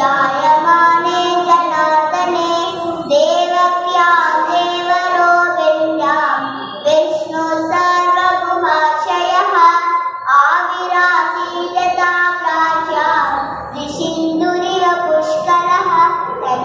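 A young girl's voice chanting a sloka in a sung, melodic recitation, with held notes and short breaths between phrases.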